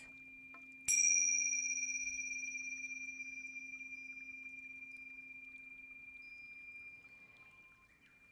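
A pair of tingsha cymbals struck together once about a second in, ringing with a high, clear tone that fades slowly over several seconds. A low, steady tone sounds underneath.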